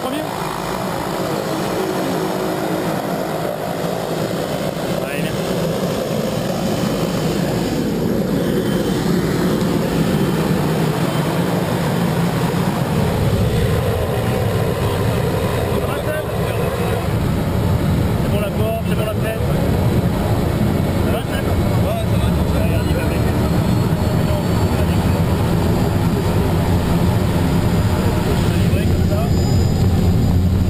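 Engine and propeller of a small single-engine plane running steadily, with voices over it. About halfway through the drone grows louder and deeper, as heard inside the plane's cabin.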